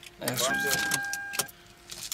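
2008 Toyota Solara's dashboard chime giving one steady beep about a second long as the ignition is switched on, before the engine is started. A sharp click comes near the end of the beep.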